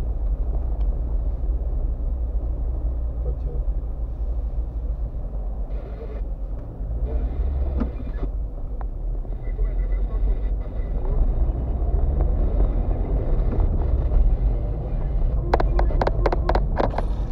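Car driving slowly over a rough, unpaved lane, heard from inside the cabin: a steady, deep rumble of engine and tyres, with a few sharp knocks near the end.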